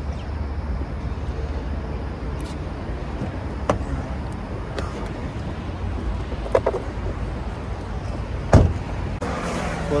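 Steady low rumble of street traffic, with a few light clicks and knocks from handling a car's door and cabin, and one heavy thump near the end.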